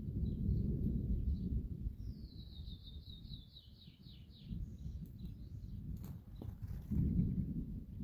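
Low rumble of distant thunder, swelling at the start and again near the end. About two seconds in, a bird gives a quick trill of about ten notes falling in pitch.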